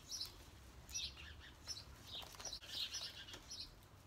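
Songbirds chirping: a run of short, high notes repeating irregularly, fairly faint.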